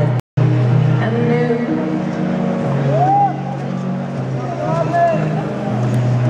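Live concert music recorded from within the arena audience: sustained low accompaniment notes that shift pitch every second or so, with short rising-and-falling voice sounds over them. The sound drops out for a moment just after the start, where the footage is cut.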